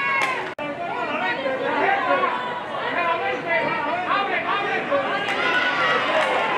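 Many voices chattering and calling out at once, overlapping so that no single speaker stands out: players and people on the sideline of a flag football game. A brief drop-out in the sound comes just after half a second in.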